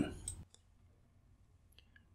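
The last word of a narrator's speech trails off, then near silence broken by a few faint clicks.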